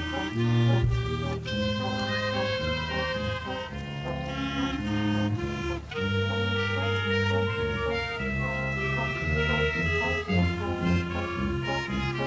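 Amateur wind band of clarinets, saxophones and flute playing held chords that change every second or so.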